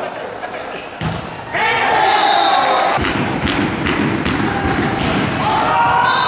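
A volleyball rally ends in a sharp hit about a second in. Players then shout and cheer, over a dense clatter of claps and thuds that echoes in the sports hall from about halfway through.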